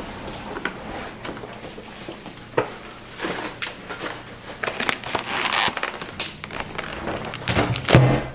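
Rustling and crinkling of groceries being carried in, with scattered knocks and clicks. A heavier thump comes near the end as a shrink-wrapped pack of canned dog food is set down on a wooden table.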